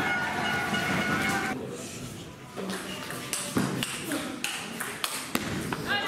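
Spectators' voices for the first second and a half, then a few scattered taps of a table tennis ball bouncing as the next serve is readied.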